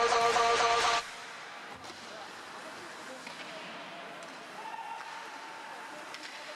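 Pop music over the ice rink's PA cuts off abruptly about a second in, as the puck is dropped for a faceoff. After that, a quieter arena background of crowd voices with a few faint knocks from sticks and skates in play.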